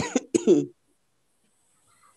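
A person coughing, two short loud coughs in the first second, heard through a video-call connection; it then goes quiet.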